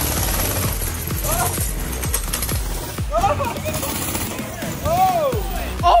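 Small go-kart running across a trampoline, with a rapid rattle, under background music and a few short shouts.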